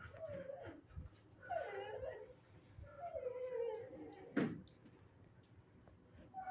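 Dog whining in three drawn-out, wavering calls, with a single sharp knock a little past the middle that is the loudest sound.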